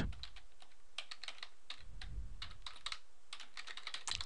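Typing on a computer keyboard: a steady run of irregular keystrokes.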